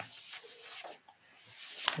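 Faint, irregular rubbing and rustling noises, with a sharp click near the end.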